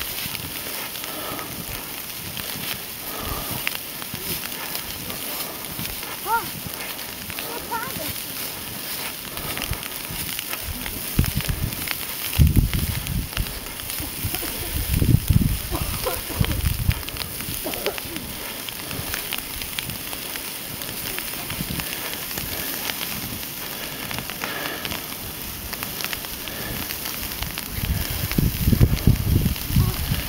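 Footsteps crunching and shuffling through deep fresh snow, a steady crackly texture, with a few louder low rumbles about midway and near the end.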